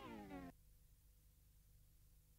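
A short pitched cry that falls steeply in pitch, cut off abruptly about half a second in, then near silence with a faint steady hum.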